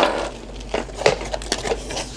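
A cardboard box being handled and opened, with small plastic-bagged accessories rustling and clattering onto a wooden tabletop in a string of light, irregular knocks and crinkles.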